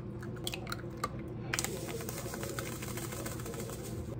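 Scattered light clicks and taps, then from about a second and a half in a steady rustling hiss with further clicks, like packaging or bedding being handled.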